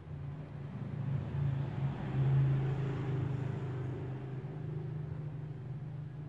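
A motor vehicle's engine rumbling, low-pitched and steady, swelling to its loudest about two and a half seconds in and then easing off.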